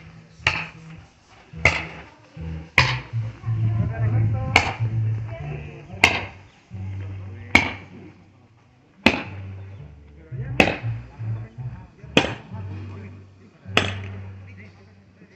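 Repeated sharp chopping strikes, about one every second and a half, over music with a low bass line moving between notes.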